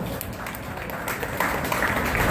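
Scattered hand clapping and cheering from a small group of bowling spectators, picking up about one and a half seconds in.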